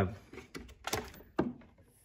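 A few short plastic clicks and taps as the clear hinged door of a small plastic breaker enclosure is handled.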